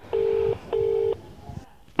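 Telephone ringback tone: one double ring, two short beeps of a steady low tone a fraction of a second apart, the sign that an outgoing call is ringing at the other end.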